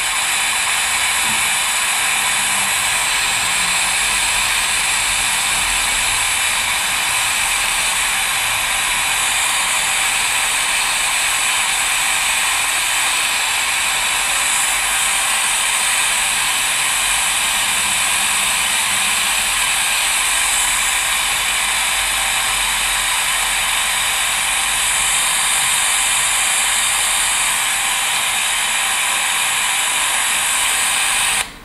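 Steady, loud FM radio static hiss from an e-book reader's built-in FM radio tuned to 101.8 MHz, with no station audio coming through.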